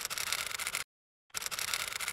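Two short scratchy swish sound effects, each a little under a second and starting and stopping abruptly, about half a second apart: transition sounds for animated on-screen titles.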